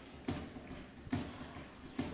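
A basketball dribbled on a hardwood court: three thuds, a bit under a second apart, over faint arena noise.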